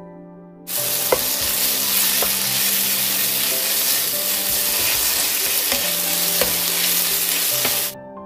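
Thin-sliced pork belly in gochujang chili sauce sizzling loudly as it is stir-fried in a nonstick frying pan, with a few sharp knocks of the spatula against the pan. The sizzle starts suddenly just under a second in and cuts off at the end.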